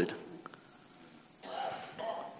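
A pause in a man's preaching: his voice trails off into quiet room tone, and about one and a half seconds in there is a soft, audible in-breath.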